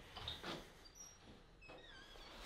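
A door being opened: a few faint knocks and rattles in the first half second, then quiet with a few faint, high, short chirps.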